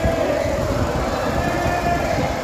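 Steady low rumble of background noise in a large indoor badminton hall, with a faint held tone; no shuttle strikes are heard.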